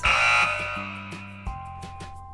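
A wrong-answer buzzer sound effect, loud at the start and fading over about a second, over light background music.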